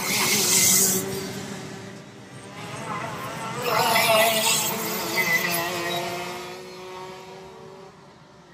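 Two-stroke racing kart engines passing at speed. The sound peaks twice, about three seconds apart, then the engine note drops in pitch and fades away near the end.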